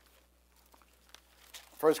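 Faint rustling of thin Bible pages being leafed through, a few soft crinkles, then a man's voice begins near the end.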